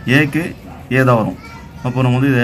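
Speech only: a man's voice talking in short phrases with brief pauses between them.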